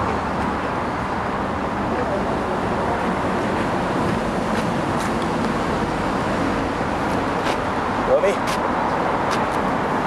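Steady background noise of an outdoor field, with faint voices of players calling out about eight seconds in and a few light clicks.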